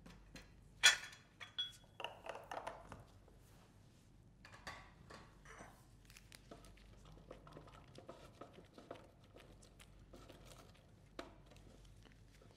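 Block of cheddar cheese being grated on an olive-oiled hand grater with steel grating faces: faint, repeated scraping strokes, with a sharp knock about a second in.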